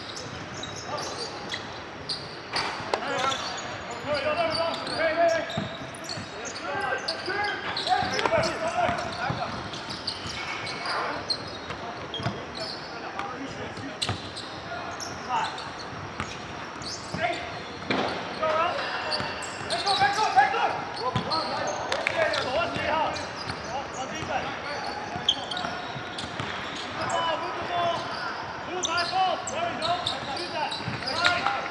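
Live game sound of an indoor basketball game: a ball bouncing on a hardwood court with repeated sharp thuds, under players' scattered shouts and chatter, echoing in a large gym hall.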